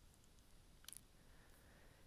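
Near silence with a single computer mouse click just before a second in.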